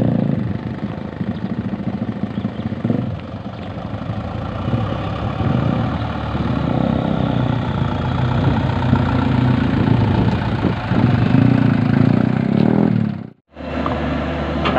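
Mitsubishi Fuso Colt Diesel truck's diesel engine running steadily at low revs, getting somewhat louder in the second half, then breaking off abruptly near the end.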